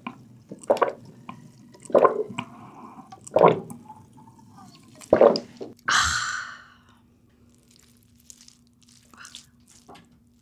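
A person gulping a drink from a metal bowl: four loud swallows about a second and a half apart. About six seconds in comes a long breathy exhale as the bowl comes down.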